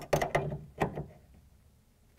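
Socket ratchet clicking about four times in the first second, then going quiet, as it snugs down a tonneau-cover rail clamp bolt.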